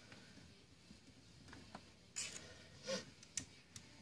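Faint clicks and taps of small metal parts being handled, from the screwdriver and screws of the aluminium trigger guard on a shotgun receiver. A few sharp ticks fall in the second half, two a little louder than the rest.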